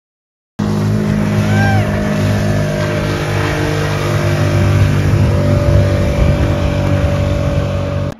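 Outboard motors running steadily at speed on open water, with the rush of water and wind. The sound starts abruptly about half a second in.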